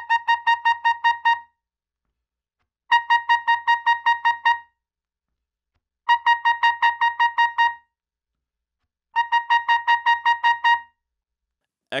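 Bb trumpet playing a tongued articulation drill at a soft dynamic: four runs of about nine short, evenly spaced notes on one high pitch, each run lasting about a second and a half, with silent rests between them.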